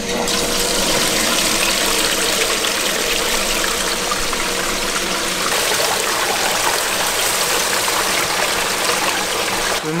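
Steady rush of water running through a recirculating sluice box fed from its tote, washing pay dirt as it is scooped onto the sluice's mesh classifier screen.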